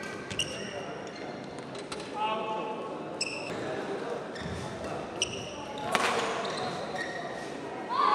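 Sports shoes squeaking sharply on a badminton court in short chirps, with a few sharp hits, the strongest about six seconds in, echoing in a large hall. Voices murmur in the background.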